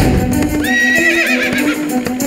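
A horse whinnying once, a long quavering call starting about two-thirds of a second in, with hoofbeats of a galloping horse, over background music.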